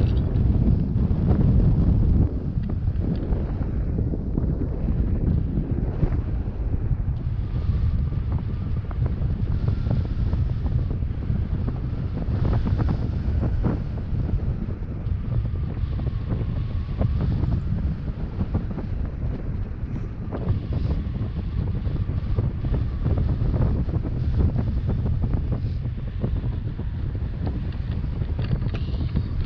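Airflow buffeting the microphone of a pole-mounted camera on a tandem paraglider in flight: a steady, loud, low rumble that rises and falls slightly throughout.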